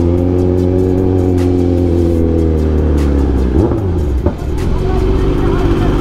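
Kawasaki Z900 inline-four engine and exhaust running at low revs in slow traffic. Its note sinks gradually, then dips and wavers briefly a little past the middle before settling again.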